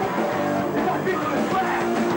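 A hardcore punk band playing live, with distorted electric guitar, drums and a shouted lead vocal.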